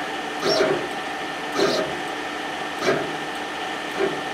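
Steady machine hum of a running K40 CO2 laser cutter setup with its fume-extraction fan, with three brief soft sounds a little over a second apart.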